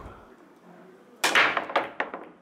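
Powerful pool break shot: the cue ball driven hard into the racked balls gives one loud, sharp crack about a second and a quarter in, followed by a few lighter clicks as the balls scatter and collide.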